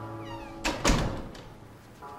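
A wooden office door swinging shut: a short squeak, then two knocks about a quarter second apart as it closes and latches, the second louder. Background music fades out just before.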